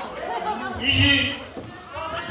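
Several people talking over one another, with a louder burst about a second in.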